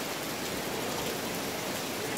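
Steady, even hiss of background noise, unchanging and without breaks.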